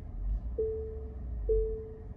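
Tesla Model Y park assist proximity chime: steady mid-pitched beeps about half a second long, roughly one a second, warning that the car is closing on an obstacle ahead as it creeps forward.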